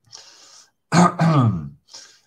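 A man clears his throat with a cough: a faint breath, then a loud rough burst in two parts about a second in, falling in pitch.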